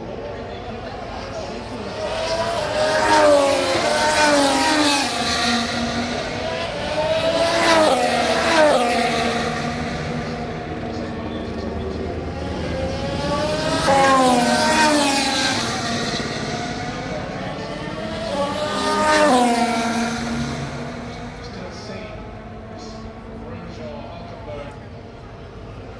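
Formula 1 cars passing the corner one after another, about every five seconds. Each pass brings a loud engine note whose pitch falls and rises as the car changes speed, then fades.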